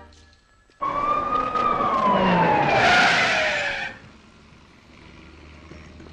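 Police siren: a single wail that starts suddenly about a second in, climbs briefly, then falls steadily in pitch, with a loud hiss joining it before both cut off sharply about four seconds in.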